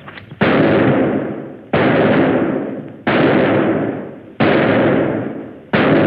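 Five handgun shots fired at a target, evenly spaced a little over a second apart, each a sharp crack trailing off in a long echo.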